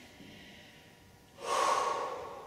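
A person breathing hard from exertion during a strenuous abdominal exercise: soft breaths, then a loud, forceful exhale about one and a half seconds in.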